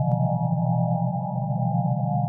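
Slow ambient music from a SynthMaster Player software synthesizer: a low held drone under a steady cluster of higher sustained tones, with a soft click just after the start.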